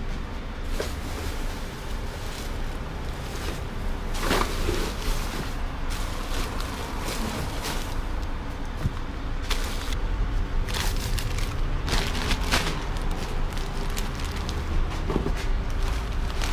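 Plastic trash bags rustling and crinkling as gloved hands dig through them, in irregular crackly bursts over a steady low rumble.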